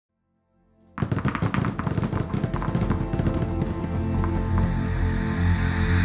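Intro music and sound effects: after about a second of silence, a dense, rapid clatter of hits begins over a low drone. The clatter thins out as the drone swells and grows louder.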